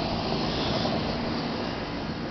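Outdoor air-conditioning unit running cranked up: a steady rushing noise with a low hum, a little quieter near the end.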